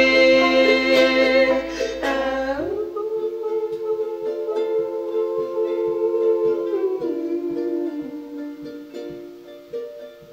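Acoustic folk band playing a passage between sung lines: a charango strummed in a steady rhythm with banjo and upright bass under long held notes. The held notes change pitch about three seconds in and again about seven seconds in, and the music grows quieter toward the end.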